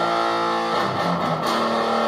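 Electric guitar tuned to Drop D playing ringing chords, the first held and changing about three-quarters of a second in, with another held from about halfway through.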